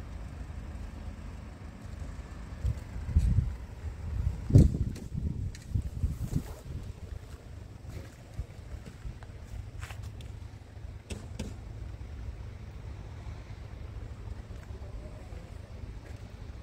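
Wind buffeting the microphone as a low, pitchless rumble that gusts loudest a few seconds in, with a few light clicks later on.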